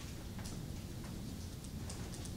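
Faint, irregular clicks and taps over a low steady room hum: students keying numbers into calculators.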